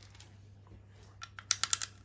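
Small plastic LEGO pieces clicking, picked from a loose pile and pressed onto a part-built model: a few faint clicks, then a quick run of sharper clicks in the second half.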